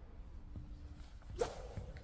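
A badminton player's footwork and backhand overhead practice swing on a wooden court floor: faint shoe sounds, then one short, sharp swish or squeak about one and a half seconds in.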